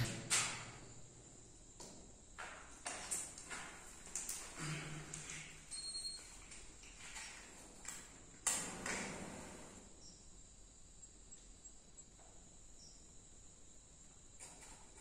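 Quiet handling sounds: scattered small taps, scrapes and rustles as candles are set into a rubble floor. A short high beep comes about six seconds in, and a sharper knock at about eight and a half seconds.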